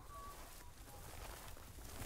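Quiet outdoor ambience in a rural paddock: a faint, steady hiss with a couple of faint, short bird chirps in the first second.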